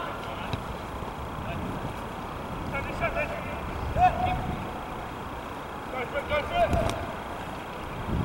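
Soccer players shouting short calls to each other over a steady background hiss: a few calls about three seconds in, a louder one at four seconds, and a cluster between six and seven seconds, with a dull thud among the last ones.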